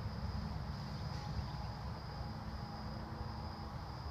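A steady, high-pitched insect trill over a continuous low rumble.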